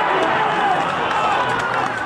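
Several voices shouting and cheering together over one another as a football goal goes in, from players and a small crowd at pitch level.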